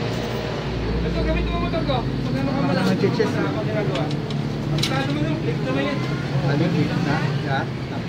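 Indistinct talk from people in the room over a steady low hum, with a brief low rumble about a second in.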